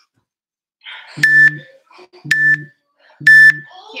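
Workout interval timer beeping a countdown: three short beeps on one pitch about a second apart, the third longer and louder, marking the end of an exercise interval.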